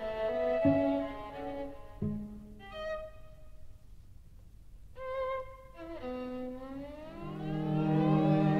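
Violin, viola and cello playing twelve-tone chamber music: short, sharply accented low notes, a brief high phrase, then a quieter stretch. Near the end, several upward glissandos rise over held low notes as the music grows louder.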